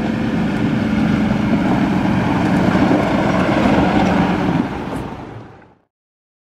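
John Deere tractor driving along a dirt farm track with a trailer, its engine running steadily with tyre noise underneath. The sound fades out near the end.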